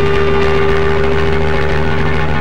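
A single distorted electric guitar note held and ringing steadily over a low, steady drone, in a loud early-2000s hardcore punk recording.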